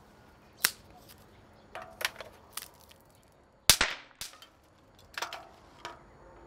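Dry sticks cracking and knocking as kindling is broken and laid into a stone tandoor: about nine sharp, irregular wooden cracks, the loudest a double crack just past the middle.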